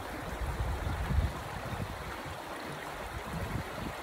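Creek water running over rocks: a steady wash of water noise, with a few low rumbles in the first second or so.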